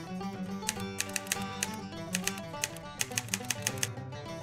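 Background music on plucked strings, with a run of sharp, rapid clicks laid over it from about a second in.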